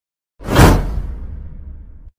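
Whoosh sound effect for an animated logo reveal: a sudden swoosh about half a second in, then a low tail that fades away.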